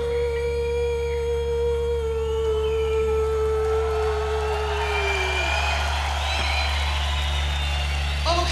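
A live rock band's last long held note, a single tone sinking slightly in pitch and fading out after about five seconds over a steady low amplifier hum, while crowd cheering swells up in the second half.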